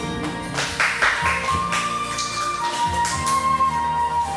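Enka karaoke backing track in an instrumental passage without singing: a melody line of long held notes over the band, with a few percussion hits about a second in.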